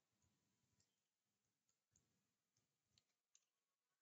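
Near silence, with a few very faint computer keyboard clicks as a name is typed.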